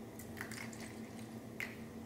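Faint pour of water from a small stainless steel pitcher into a glass measuring cup of agave, with two small clicks, about half a second in and near the end.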